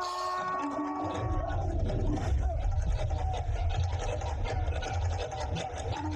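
Film soundtrack of a battle scene, recorded off a cinema screen: held tones at first, then from about a second in a deep, steady rumble of score and battle effects with crackling above it.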